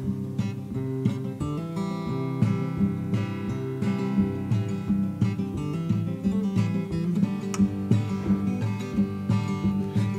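Solo flat-top acoustic guitar strumming chords in a steady rhythm, with no voice: an instrumental passage between sung lines of the song.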